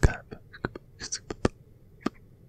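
Close-miked mouth sounds: a string of about six sharp wet clicks and smacks, with a short breathy hiss about a second in.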